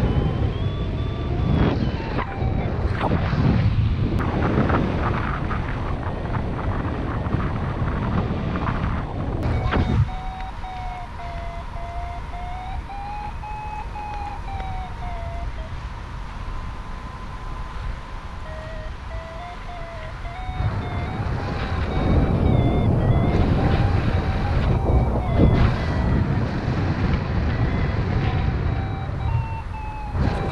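Wind buffeting the microphone of a paraglider in flight, heavy and gusty in the first third and the last third and calmer in between. Over it a paragliding variometer sounds a thin electronic tone that wavers slowly up and down in pitch, broken into beeps in places, as it signals climbing air.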